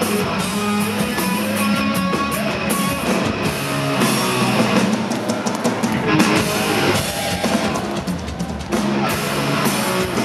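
A heavy rock band playing live: electric guitar riffing over a full drum kit, recorded from the audience.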